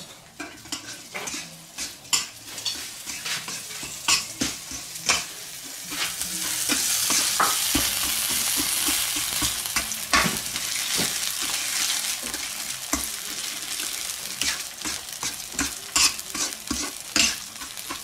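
Metal ladle scraping and clinking against a metal wok as chopped food is stirred in hot oil, with a frying sizzle. The sizzle swells into a steady hiss about six seconds in.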